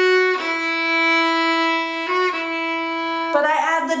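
Violin bowing slow, long held single notes that step down the scale, the waltz phrase played with its double stops left out so only the plain descending melody sounds. A short note change comes about two seconds in, and the playing gives way to speech near the end.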